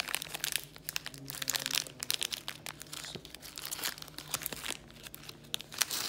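A foil-lined plastic cookie wrapper crinkling and crackling as it is torn open by hand and the cookie is worked out of it, in a dense, irregular run of crackles.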